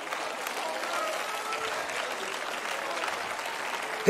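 Congregation applauding steadily, with scattered voices calling out faintly among the clapping.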